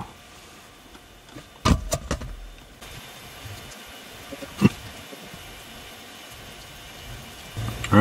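Quiet background hiss broken by two soft knocks about two seconds in and one sharp click near the middle.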